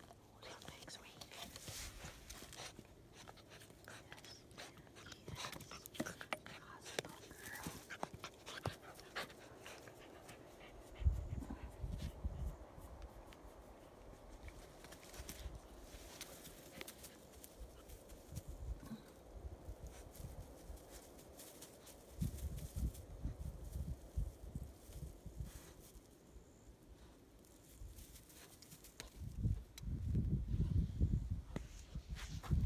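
German Shepherd puppy sniffing and panting close to the microphone, with small clicks and rustles as it noses at the phone. Low rumbling thumps on the microphone come a third of the way in and again later on.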